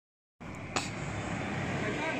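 Steady outdoor background rumble, like distant traffic or wind on the microphone, starting suddenly after a moment of silence, with one sharp click just under a second in.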